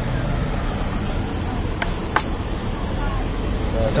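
Steady low rumble of street traffic, with two short sharp clicks a little after the middle.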